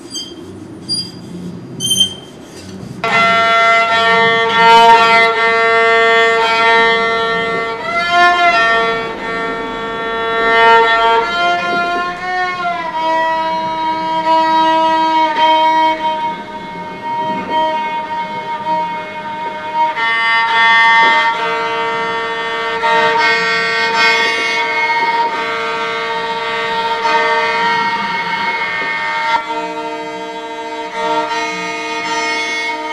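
Solo violin bowed in long held notes, two notes sounding together, with slow slides in pitch between them; the bowing starts about three seconds in, after three short high plinks about a second apart.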